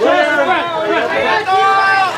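Several photographers shouting over one another to a person posing for pictures, with one voice drawn out into a long held call near the end.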